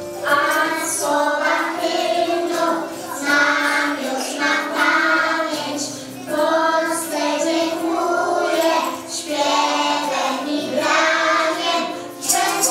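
A group of young children singing together over instrumental accompaniment, in phrases of about three seconds with short breaths between them.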